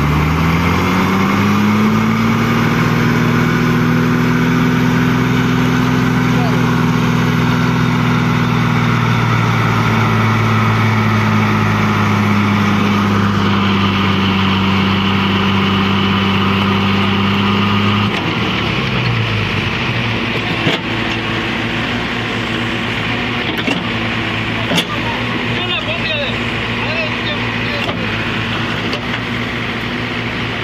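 Heavy diesel engine revving up hard and held at high revs under load for about eighteen seconds while pulling a tipper truck stuck in mud, its pitch sagging slightly, then dropping back to a lower speed.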